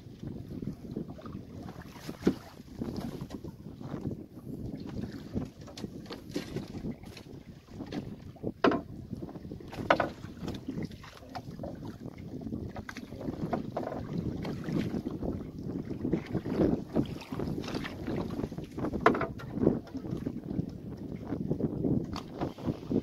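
Wind buffeting the microphone and water moving against the hull of a small open boat at sea, with occasional sharp knocks.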